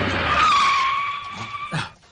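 Vehicle noise giving way to a long tyre screech that falls slightly in pitch, ending in a brief sharp sound near the end.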